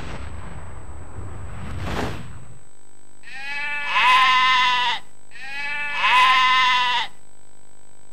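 A whoosh that swells to a peak about two seconds in, then a sheep bleating twice, each bleat about a second and a half long.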